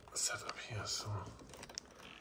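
Quiet handling noise from a phone being picked up and carried while it records: a few light clicks and rustles, with a soft muttered word.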